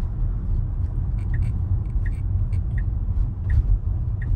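Steady low road and tyre rumble heard inside a Tesla's cabin while it rolls slowly on a wet, wintry road, with a few faint light ticks scattered through it.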